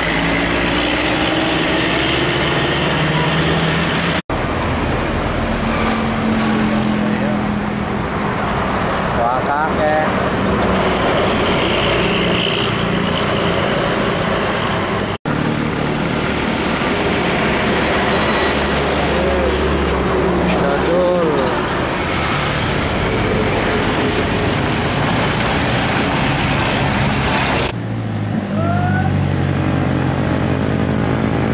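Diesel intercity buses and a truck driving past on a winding road, engines running with steady road noise. The sound drops out for an instant twice.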